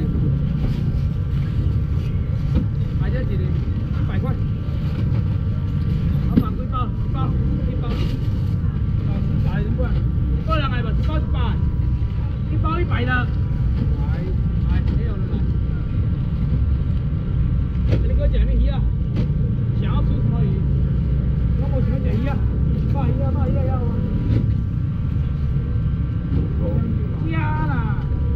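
A steady low mechanical rumble with a faint steady whine over it, under scattered voices from a crowd.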